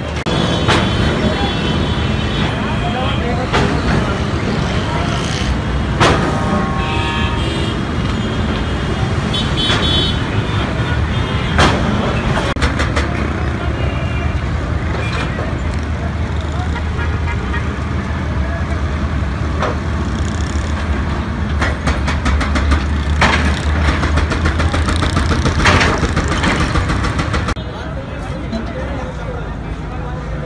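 Diesel engines of excavators running steadily while they break up shop fronts, with scattered knocks and crashes of debris. Vehicle horns toot several times, and a crowd of men talks throughout.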